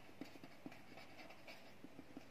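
Faint scratching and light tapping of a pen writing on ruled paper, in short, irregular strokes.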